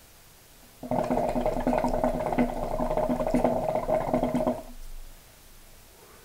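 Water in the base of a Khalil Mamoon (KM) hookah bubbling as smoke is drawn through the hose, a dense gurgle with a steady low tone under it, starting about a second in and lasting about four seconds before dying away.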